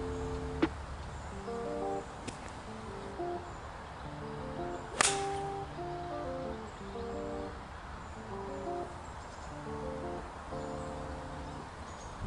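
Background music with plucked-sounding notes, and about five seconds in a single sharp crack of an 8-iron striking a golf ball off the tee.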